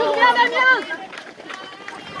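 Mostly speech: a voice calls out a cheerful greeting in the first second, then it drops to quieter outdoor background with faint voices.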